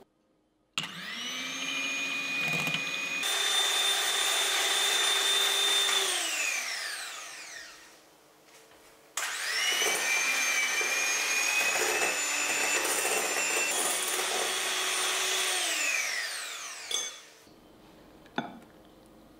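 Electric hand mixer whipping heavy cream and mascarpone in a glass bowl, run twice: each time the motor whine rises as it spins up, jumps to a higher speed partway, then falls away as it winds down. A short knock follows near the end.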